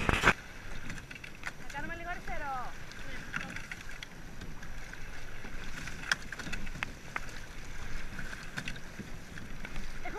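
Water rushing and splashing along the hull of a coastal rowing single being rowed through choppy sea, with short scattered knocks from the oars working in their riggers. There is a brief vocal sound about two seconds in.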